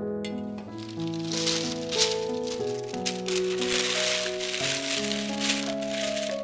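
Baking paper rustling and crinkling as it is pressed into a round cake tin, over background music of slow sustained notes.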